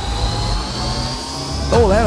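Electronic background music with a synthesized riser: a thin tone sweeping slowly upward over a low bass bed, like a jet-style whoosh building to a transition. A narrator's voice comes in near the end.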